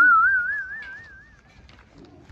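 A whistle with a fast, even wobble in its pitch, rising slightly as it goes, loud at the start and fading out over about a second and a half.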